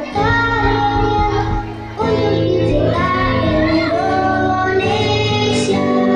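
A young girl singing into a microphone while playing an acoustic guitar, sung phrases with a short break about two seconds in.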